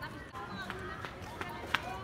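Faint voices of people talking in the background, with a few sharp clicks; the loudest click comes near the end.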